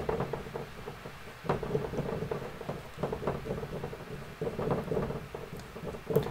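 Dry-erase marker drawing on a whiteboard: an irregular run of short taps and strokes as small stick figures are drawn.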